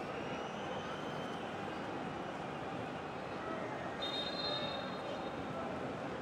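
Pitch-side ambience of a football match played without a crowd: a steady, even rush of background noise. From about four seconds in, a thin, high steady tone sounds over it.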